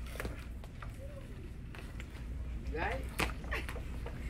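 Skateboard on a hard shop floor: a few sharp clacks of the board and wheels, the loudest about three seconds in, with short voice sounds in between.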